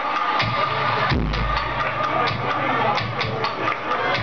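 Techno played loud over a club sound system, with a steady pounding beat and a deep bass note swelling in about a second in.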